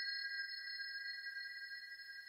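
Several steady high-pitched tones sounding together: a sustained electronic drone.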